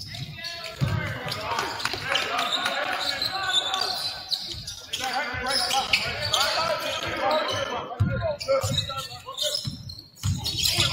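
Basketball dribbled on a hardwood gym floor, its bounces heard as dull thumps, under players and coaches calling out across the court.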